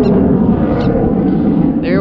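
Yamaha 90 hp outboard motor on a 17-foot boat running steadily, a low rumble.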